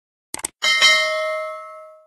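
Subscribe-button animation sound effects: a quick burst of mouse clicks about a third of a second in, then a bright bell ding that rings and fades away over about a second and a half.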